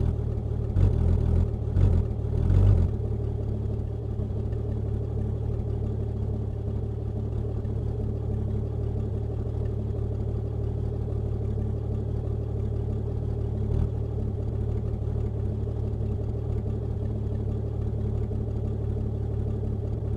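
A recorded car engine played back through the AudioMotors plug-in's Scratch mode. For the first few seconds it lurches unevenly as the cursor is scrubbed through the recording. It then settles into a steady, unchanging engine drone, held as an endless texture by grains stitched seamlessly at one point in the file.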